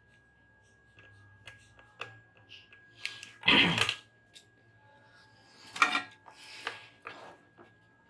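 Scattered light clicks and clacks of small tools and parts being handled on a workbench, with a faint steady high-pitched tone underneath.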